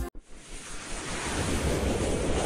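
Background music cuts off abruptly, then a rushing whoosh sound effect swells, rising in pitch near the end.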